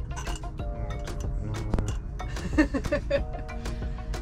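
Background music over light metallic clinking as sailboat winch parts are handled and fitted back together.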